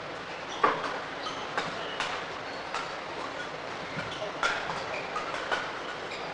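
Badminton rally: a quick, uneven run of sharp cracks as rackets strike the shuttlecock, the loudest just over half a second in, over the steady noise of the sports hall.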